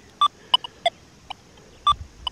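About six short electronic beeps from an XP Deus II metal detector, irregularly spaced and differing in pitch.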